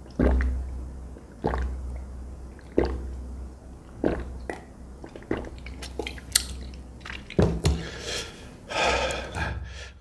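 A person gulping a drink from a plastic mug, with about five swallows at a steady pace of one every second and a bit. In the second half come a few sharp clicks and knocks as the mug is set down, then a breath out near the end.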